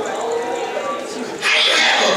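A man preaching, his voice jumping to a loud shout about one and a half seconds in.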